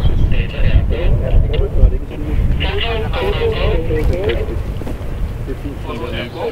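Men talking in the background, with gusty wind rumbling on the microphone.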